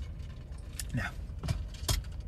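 A voice briefly saying "no" about a second in, followed by two sharp clicks over a low steady hum.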